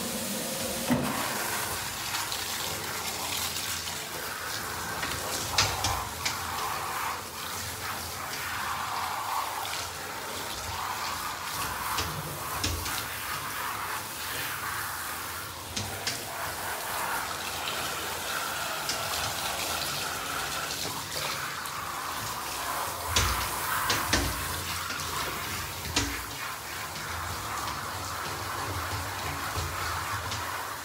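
Handheld shower head spraying water over a dog's fur in a bathtub, a steady hiss. A few knocks and thumps sound against the tub now and then.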